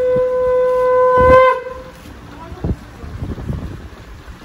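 A conch shell (shankha) blown in one long steady note that rises slightly and cuts off about one and a half seconds in, followed by a few soft knocks.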